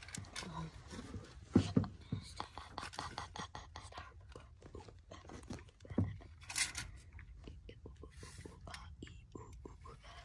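A catfish being measured with a tape measure on the deck of an aluminum jon boat: many small scattered clicks of the tape and handling, with a couple of louder knocks, about one and a half seconds in and again about six seconds in.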